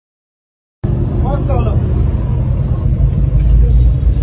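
Low, steady rumble of a car running, heard from inside its cabin, starting about a second in, with a voice briefly audible over it.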